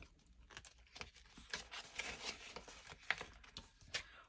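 Faint rustling and crinkling of paper banknotes and a plastic binder sleeve being handled, with a few short light clicks, the sharpest about three seconds in.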